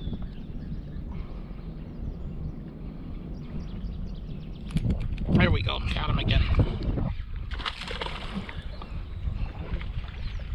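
Steady low rumble of wind and water around a small fishing boat, with indistinct voice sounds from about five to seven seconds in, while a hooked smallmouth bass is reeled in on a spinning reel.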